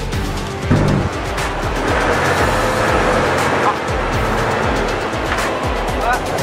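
Action-trailer-style background music with a steady beat over a low bass drone, and a rushing noise swelling under it from about one to four seconds in.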